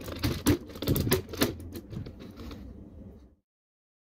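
Hard plastic parts of a DX Swordfish Zord and Megazord toy clicking and clattering as they are handled and fitted together, with several sharp clicks in the first second and a half. The sound fades, then cuts off a little past three seconds.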